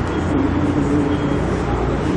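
Steady, fairly loud machine-like background hum and rumble with no breaks.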